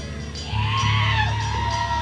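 Live rock band playing through a camcorder microphone: a long high note held from about half a second in, over a steady bass.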